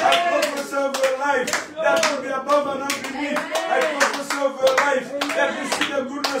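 Several people clapping their hands in a quick, steady rhythm, about three claps a second, with raised voices calling out over the clapping.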